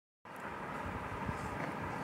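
Steady background noise of the recording, a low rumble and hiss with no distinct events, switching on abruptly about a quarter second in out of digital silence.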